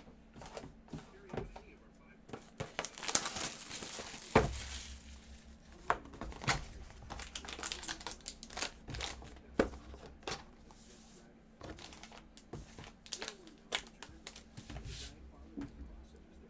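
Cardboard trading-card boxes being handled and opened, with foil packs crinkling and rustling and the wrapping tearing. Scattered sharp clicks and knocks of boxes and packs set down on the table, loudest a little over four seconds in.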